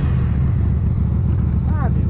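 Yamaha Virago 250's small V-twin engine running steadily at low revs, barely above idle.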